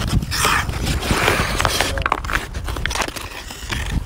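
Hockey skate blades scraping and carving on natural outdoor ice, with a run of sharp clicks from sticks and pucks striking the ice through the middle, over a steady low rumble.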